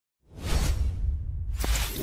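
Logo-animation whoosh sound effect: a swoosh over a deep rumble starting about a quarter second in, then a second swoosh about a second and a half in.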